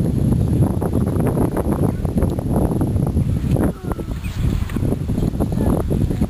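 Wind buffeting the camera microphone with a heavy, uneven rumble, over indistinct voices and shouts from the pitch.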